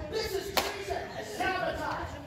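Indistinct voices on stage, with a single sharp smack about half a second in.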